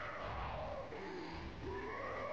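A drawn-out vocal cry from the anime's soundtrack, its pitch rising and falling in long, wavering glides with a short break about three-quarters of the way through.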